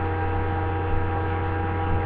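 Steady electrical mains hum with a stack of higher overtones, picked up on a webcam's microphone.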